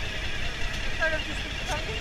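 Suzuki DL1000 V-Strom's V-twin engine idling steadily, with faint voices in the background.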